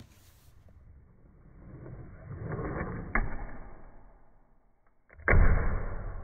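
A fingerboard ollie on a tabletop played back in slow motion, so its sounds come out dull and drawn out. A building scrape of the board swells to a sharp click of the tail pop about three seconds in, and a louder low thud of the landing comes a little after five seconds and trails off.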